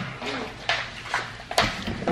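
People moving about and settling on a sofa: a few short sharp knocks and clicks, the loudest about one and a half seconds in, with a faint young voice early on.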